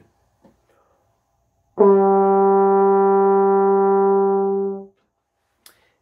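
French horn holding one steady note for about three seconds, starting about two seconds in: the written D, fingered with the first valve on the F side of the horn, sounding the G below middle C.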